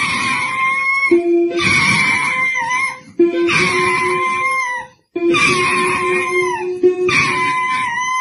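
A dog pressing the keys of a toy electronic keyboard, which sounds long held notes, while the dog howls along in long cries that drop in pitch at their ends. Three such phrases come with short breaks between them.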